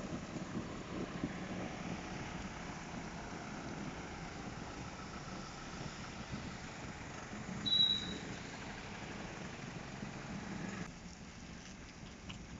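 Diesel engine of a Mahindra fuel-delivery truck running at low revs as the truck moves off slowly, with one short high-pitched chirp about eight seconds in. The engine sound falls away about a second before the end.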